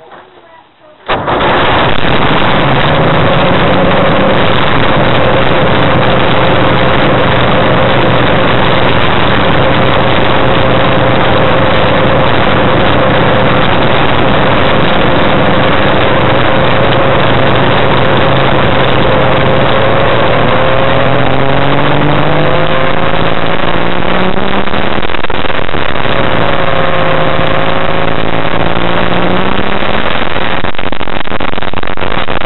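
Challenger II ultralight's two-stroke engine catching about a second in and running steadily at a low speed, then rising in pitch twice near the end as the throttle is opened.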